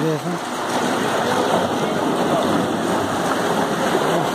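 Steady rushing of water flowing through the wash troughs of a sand filter as it is backwashed, the wash water rising up through the filter bed and spilling into the troughs.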